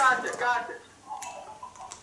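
A person's voice: a short spoken or exclaimed sound at the start, then a quieter voiced sound about a second later.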